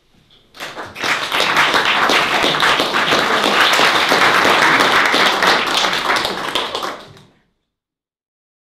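Audience applauding at the end of a live song: the clapping starts about half a second in, swells quickly to full strength, then fades and cuts off shortly before the end.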